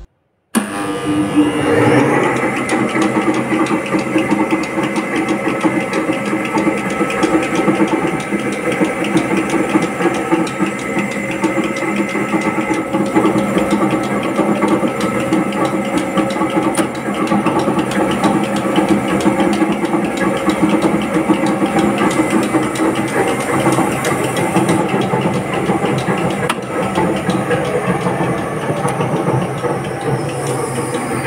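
Electric motor and belt-driven atta chakki (flour mill) starting up about half a second in, coming up to speed over a couple of seconds, then running loudly and steadily with a fast, dense rattle.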